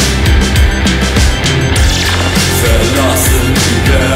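Instrumental passage of a dark punk-rock song: a full band with drums and a heavy low end playing loud and steady. About halfway through, a falling, sliding sound drops down over the music.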